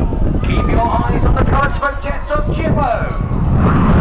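Voices talking over a low rumble of wind on the microphone. From about three and a half seconds in, a louder, steady rushing roar builds: the jet noise of the Red Arrows' BAE Hawk T1 jets reaching the beach.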